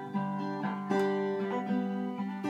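Acoustic guitar played in a short instrumental gap between sung lines, a fresh chord struck about every half second and left ringing.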